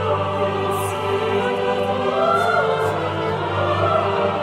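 An oratorio performed by choir and orchestra: voices singing sustained lines over the orchestra, with one held upper note gliding upward about halfway through.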